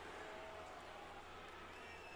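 Near silence: faint room tone with a low, steady electrical hum.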